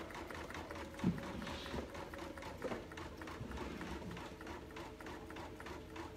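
Computerised embroidery machine stitching out a design, its needle going with a fast, even clatter, with a soft knock about a second in.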